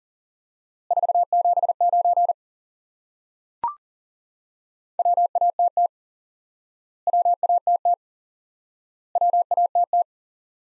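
Morse code sent as a single steady tone at about 700 Hz at 40 wpm. One word is keyed once, then a short higher courtesy beep sounds about 3.5 s in, then another word is keyed three times in a row, each about a second long.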